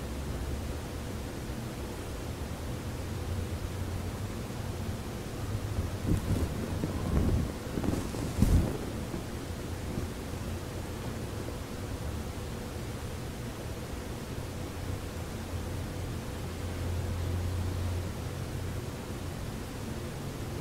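Steady low rumble and hiss of room and microphone noise with a faint steady hum. A few muffled bumps and rustles come in a cluster about six to nine seconds in, like movement near the microphone.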